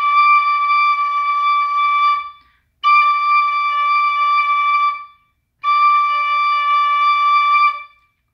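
Tin whistle playing three long held whole notes on D, all at the same steady pitch, each lasting about two and a half seconds with a short break between them.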